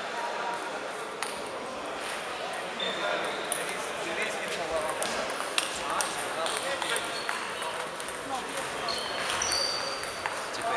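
Table tennis ball knocking on bats and table in a string of quick, irregular clicks during a rally, with voices in the background.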